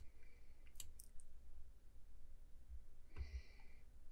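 A computer mouse clicks sharply about a second in, with a couple of fainter clicks just after; near the end there is a short, soft breath.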